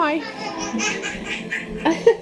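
Voices talking and laughing in a room, with a burst of quick laughter near the end.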